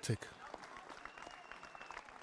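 Crowd clapping outdoors, faint and steady: a dense patter of many hands.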